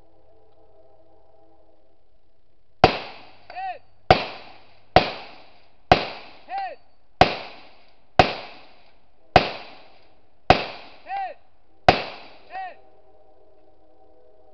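Nine rifle shots fired from the prone position at roughly one-second intervals, each cracking and then echoing briefly. Four of the shots are followed under a second later by a short ringing ping from downrange, typical of a bullet hitting a steel target.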